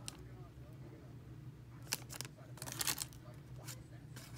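Handling of Pokémon trading cards and a foil booster-pack wrapper: short dry clicks and rustles, one sharp snap about two seconds in and a quick cluster near three seconds, over a faint low hum.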